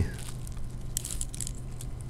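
Faint taps and scratches of a stylus on a tablet screen, thickest about a second in, over a low steady hum.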